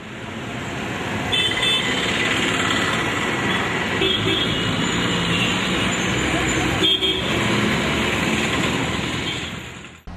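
Busy street traffic: vehicles running past steadily, with short horn toots about a second in, around four seconds and near seven seconds. The sound fades out near the end.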